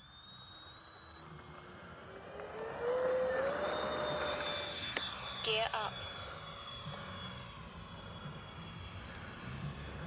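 Twin 70 mm electric ducted fans of an FMS A-10 Thunderbolt II RC jet spooling up to full power for takeoff: a whine that rises in pitch over the first few seconds, then holds steady and slowly fades as the jet climbs away.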